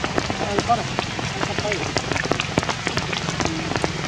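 Rain falling in a forest, with many scattered drops striking leaves and stones as sharp ticks over a steady hiss. A steady low hum and a few faint, short voice-like calls sit underneath.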